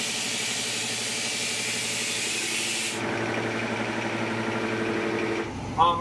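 Workshop machinery running: a steady motor hum with a loud hiss of air over it. The hiss cuts off about three seconds in and the hum carries on.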